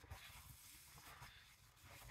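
Near silence: room tone with faint soft rustling of a paper tissue being used to wipe the mouth.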